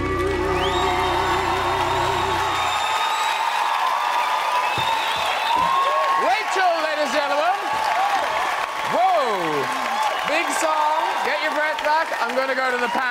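A woman's voice holding the final sung note of a ballad with wide vibrato over an orchestral backing, which ends about three seconds in. Then the studio audience applauds, cheers and whoops.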